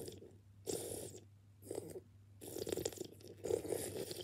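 Wet mouth sounds of someone sucking on an ice lolly held in the mouth, in three or four short spells.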